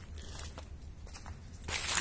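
Quiet outdoor background: a low steady rumble with a few faint clicks, then a short breathy hiss near the end.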